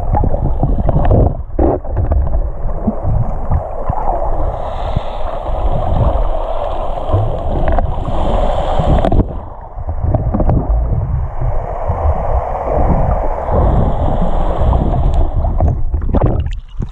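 Muffled rushing and gurgling of seawater moving around a GoPro in its waterproof housing just under the surface, with scattered short knocks as the camera is moved about.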